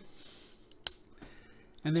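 A single sharp click from a replaceable-blade pocket knife's locking mechanism as it is worked by hand, a little under a second in, amid quiet handling.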